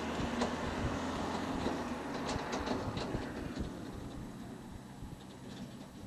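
Test train on a new high-speed rail line, its rumble fading steadily as it moves away, with scattered sharp clicks from the wheels on the track.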